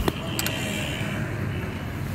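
A Suzuki Mehran's 800 cc three-cylinder engine idling, heard from inside the cabin as a steady low hum, with a couple of sharp clicks in the first half second.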